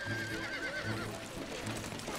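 A horse whinnies, one wavering call that falls slightly in pitch over the first second, over the clip-clop of hooves on a gravel path.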